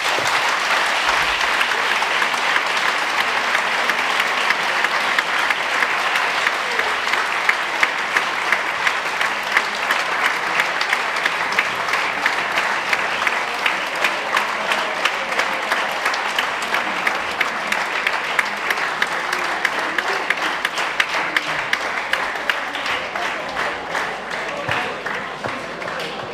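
A large audience of students applauding at length in an auditorium. The clapping settles into a regular beat after several seconds and eases slightly near the end.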